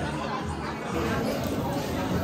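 Several people talking at once in a busy restaurant dining room, with no single voice standing out.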